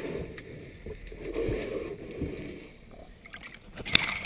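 Muffled underwater swishing as a diver wipes a boat hull by gloved hand, swelling and fading in waves. Near the end, splashes and clicks as the camera breaks the water's surface.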